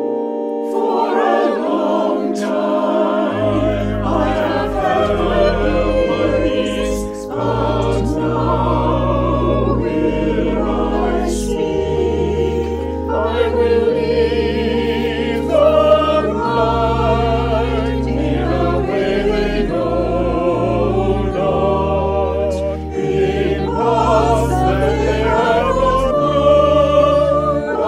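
A church choir singing with organ accompaniment. The voices enter over a held organ chord about a second in, and deep sustained bass notes join a few seconds later.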